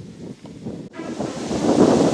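Wind buffeting the microphone, starting abruptly about a second in and growing louder.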